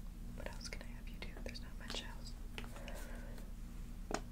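A woman whispering softly.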